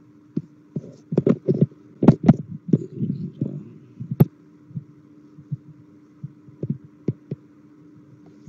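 Open voice-chat line carrying a steady electrical hum with irregular thumps and clicks, a dense clump of them about one to three seconds in, a sharp click about four seconds in, then scattered knocks.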